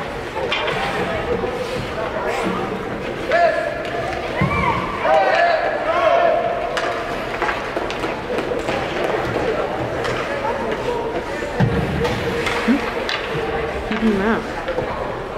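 Indistinct voices echoing in an ice rink: chatter with a few louder calls about three to six seconds in, and scattered sharp knocks.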